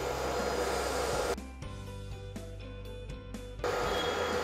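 Steady whirring noise from an induction cooktop heating oil in a nonstick frying pan. About a second and a half in it drops to a quieter steady hum of several tones, and the whir comes back near the end.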